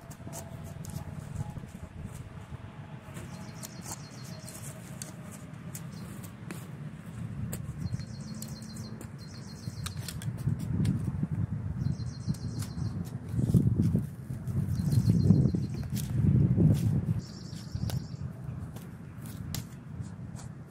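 A shovel digging weeds out of dry, root-matted ground: rustling and crunching strokes, louder and more frequent in the second half. A bird chirps in short repeated phrases every second or two.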